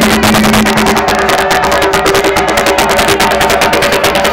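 Umbanda ritual drumming: hand drums and percussion beating a fast, dense, steady rhythm, with a few held notes sounding above it.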